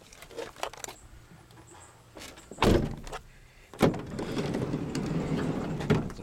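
Doors of a 2010 Ford Transit Connect cargo van being worked: a heavy door thunk a little under three seconds in, then a sharp clunk about a second later as a sliding side door is unlatched and rolled open, rumbling along its track for about two seconds.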